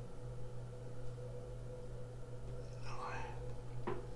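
A steady low hum, with a soft whisper-like breath about three seconds in and a sharp click just before the end.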